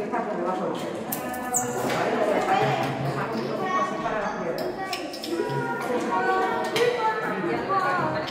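Several children talking over one another, with scattered clicks and knocks of plastic and objects being handled on the tables.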